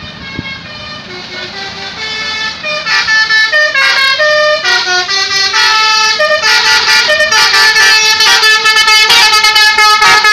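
A tour bus's 'telolet basuri' musical horn plays a fast tune of stepped notes. It grows louder as the bus approaches and is very loud from about three seconds in.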